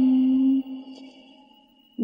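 A voice chanting Vietnamese verse holds one long note that breaks off about half a second in. It trails away in echo to near silence until the chanting resumes at the very end.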